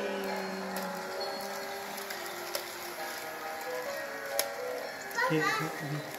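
A melody of held notes playing from the toy Christmas train set as it runs, with a couple of sharp clicks along the way and a voice near the end.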